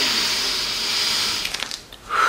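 A long breathy exhale close to the microphone, a sigh lasting about a second and a half, followed by a few faint clicks.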